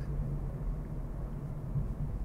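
A car being driven, heard from inside its cabin: a steady low rumble of engine and road noise with a constant low hum.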